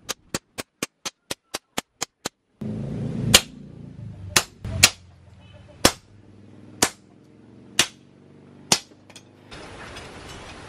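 Hammer blows on a hafted hot-cut chisel cutting through red-hot car leaf-spring steel on an anvil. It starts with a quick run of sharp strikes, about four a second. After that, slower single blows land about once a second over a steady hum.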